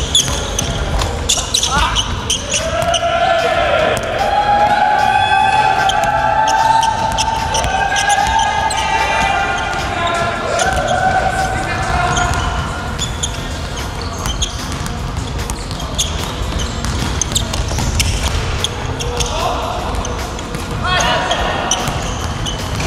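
A basketball being dribbled and bouncing on a hardwood gym floor, with the echo of a large hall. Through the first half, raised voices call out in long drawn-out cries for several seconds.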